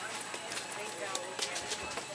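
Footsteps on a hard store floor: a run of sharp clicking steps over the low hum of a shop.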